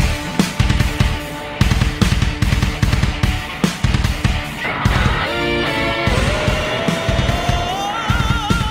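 A rock song playing, with the full band of drums and electric guitar in a heavy, driving beat and a sustained note gliding upward near the end.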